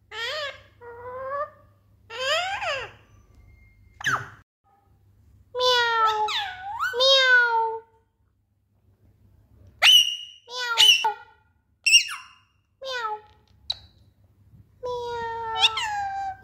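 Alexandrine parakeet chattering in short, speech-like phrases with rising and falling pitch, broken by pauses. Around the middle comes a run of sharp high calls, and near the end a few longer phrases.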